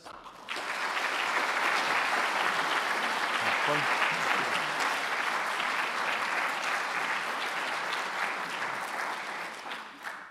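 An audience applauding steadily. It starts about half a second in and fades out near the end.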